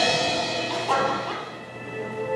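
Music playing: held instrumental notes fading away, with a new chord struck about a second in.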